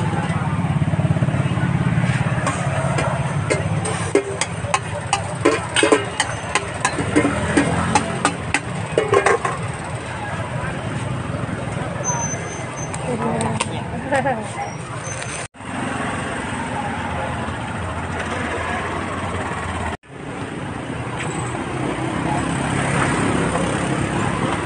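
Busy street-market din: a crowd of voices over a steady motor-traffic hum, with a run of sharp clattering clicks from about four to ten seconds in. The sound cuts out for an instant twice in the second half.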